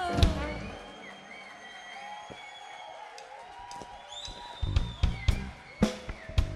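Live funk band music. A loud band hit closes a passage just after the start, then a quieter stretch follows with only a few held notes. The drum kit comes back in about two-thirds of the way through with kick and snare hits.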